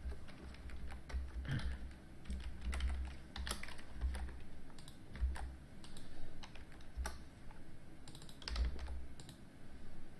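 Typing on a computer keyboard: irregular keystroke clicks in short runs with brief pauses.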